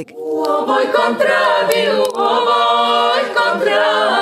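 Women's vocal group singing a traditional Croatian folk song a cappella, several voices in harmony. The singing sets in right at the outset, breaks briefly about halfway, then goes on in long held chords.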